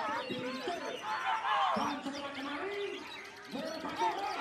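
White-rumped shama singing a quick, varied run of sliding whistles and chirps, mixed with other songbirds and people's voices.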